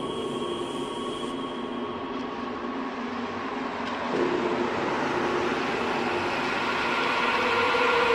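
Dark electronic music intro with no beat yet: held drone tones over a rumbling, noisy texture. The chord shifts about four seconds in and the whole thing slowly swells louder.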